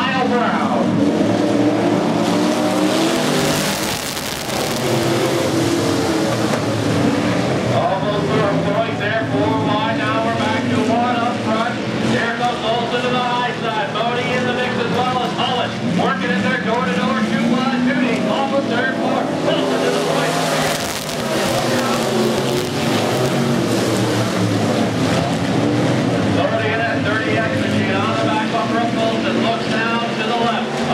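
A pack of Northern SportMod dirt-track race cars running at racing speed, several V8 engines at once, their pitch repeatedly rising and falling as the cars work around the oval.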